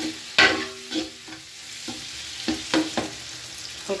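A spoon scraping and stirring in an aluminium pot of chopped tomatoes frying with spiced onions in oil, over a low steady sizzle. There are several short scrapes at uneven intervals.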